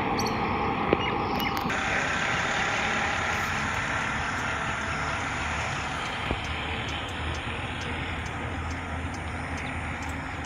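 Steady road noise from traffic, with a vehicle going by, fading slowly; there is a short click about a second in.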